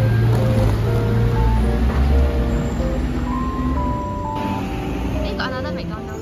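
Light background music over the low rumble of street traffic, with a city bus pulling past; the rumble eases after about four seconds.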